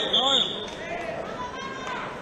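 Voices shouting at a wrestling bout, with a referee's whistle giving two short high blasts right at the start.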